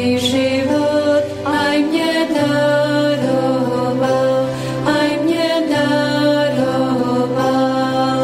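Slow sung chant: voices hold long notes over a low sustained bass note that changes pitch a few times.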